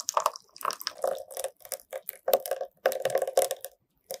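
Thick cake batter poured in a stream into a square metal cake ring, heard as a run of irregular wet plops that stops shortly before the end.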